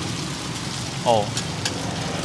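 Egg and taro flour cake cubes (bột chiên) sizzling steadily in hot oil on a wide flat frying pan, with a low steady hum beneath and two light ticks near the middle.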